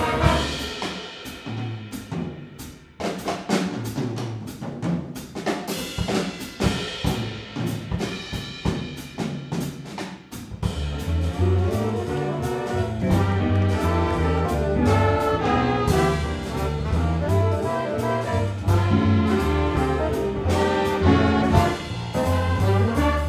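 Jazz big band playing, with the drum kit prominent. For the first half the drums play with sparser horn figures. About halfway through, the full band with brass and bass comes in strongly.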